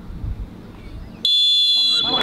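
A hushed football crowd, then about a second in a sudden, loud, long blast on a referee's whistle: two high pitches held steady.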